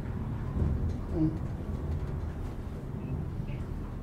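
Hiss-Craft modernized traction elevator car travelling between floors: a steady low hum and rumble of the ride heard inside the car, with a short tone about a second in.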